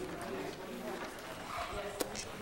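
Faint, indistinct voices talking away from the microphones in a meeting room.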